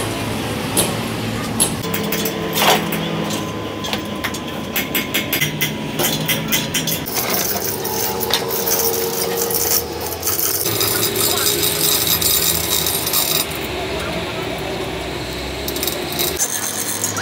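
Metal clinks and rattles from workshop work on a steel trailer axle and its lifting chains, with voices talking in the background. The background changes abruptly a few times.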